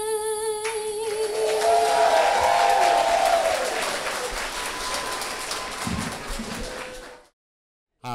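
A lone female voice, unaccompanied, holds the final note of the national anthem, which ends about half a second in. Crowd applause and cheering follow, with a whoop, and fade until the sound cuts off suddenly about seven seconds in.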